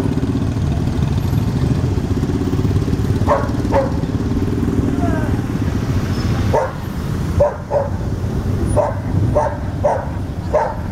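Motorcycle engines running as an escort of motorcycles rides past, a steady low rumble that eases about two-thirds of the way through. A dog barks twice a few seconds in, then repeatedly in short barks near the end.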